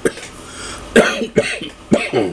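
A man coughing several times in a short fit, the loudest cough about a second in.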